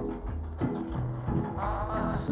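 Background music: a song with sustained instrumental notes over a steady bass line.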